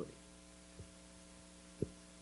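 Faint steady electrical mains hum with a few low tones, broken by a faint tick about a second in and a short click near the end.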